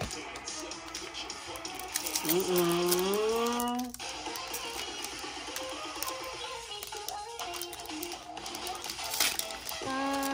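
Crinkling and crackling of a foil trading-card booster pack being torn open, with the cards inside flicked through by hand. A short tune runs under it: one note rises and holds a couple of seconds in, and fainter notes follow.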